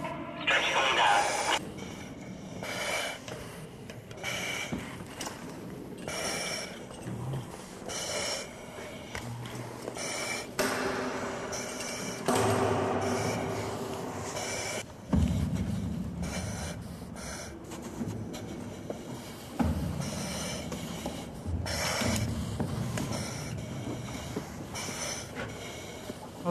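Rescuers breathing through self-contained breathing apparatus face masks, a hiss with each breath, mixed with muffled voices and handling noises, with a sharp knock about twenty seconds in.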